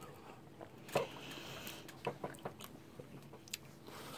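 A person eating ice cream off a spoon: faint mouth and chewing sounds with a few small clicks, the sharpest about a second in.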